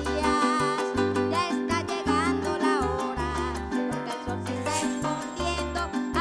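Venezuelan música llanera played live by a conjunto llanero: llanero harp with cuatro, maracas and bass notes, at a steady lively pulse.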